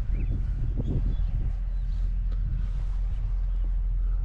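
Wind buffeting the microphone in an open field, a steady low rumble.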